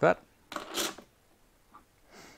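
A brief rubbing scrape, about half a second long, from hands handling the clear acrylic fence on a router table.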